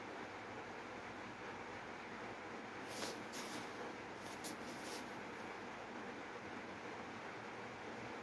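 Haier 7.5 kg front-loading washing machine partway through a wool wash cycle: a steady low hiss, with a few brief louder hissing sounds about three to five seconds in.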